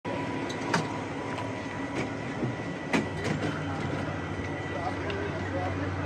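Coach bus idling close by, a steady low hum with a faint high whine, with a few sharp clicks and knocks, the loudest about a second in and near the middle.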